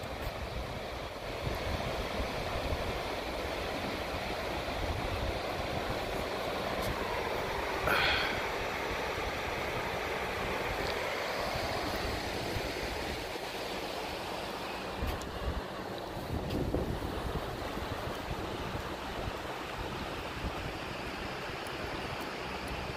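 Wind buffeting the microphone over a steady wash of distant surf on a tidal beach, with a short high-pitched sound about eight seconds in.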